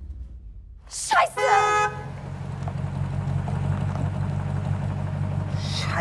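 A car horn honks once, about a second in, for roughly half a second, right after a brief sharp sound that drops in pitch. After it, a vehicle engine idles steadily.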